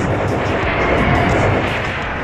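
Loud rushing noise like a jet or rocket engine, building through the first second and easing off near the end.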